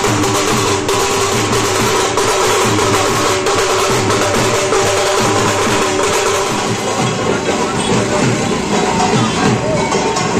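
Street procession band of dhol drums and a struck brass gong playing a fast, steady beat, with some held tones above it.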